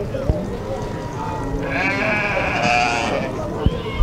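A sheep bleating: one long, wavering bleat about two seconds in, over a murmur of voices.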